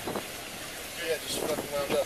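Indistinct voices from about a second in, over steady outdoor background noise, with a brief knock just after the start.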